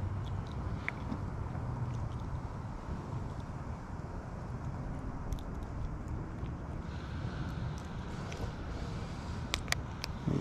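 Steady low outdoor rumble, with a few faint clicks and two sharper ticks near the end as hands work a small sunfish off a micro fishing hook.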